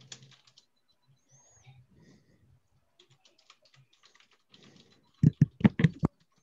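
Typing on a computer keyboard: light, scattered keystrokes, then a quick run of much louder, heavier key strikes near the end.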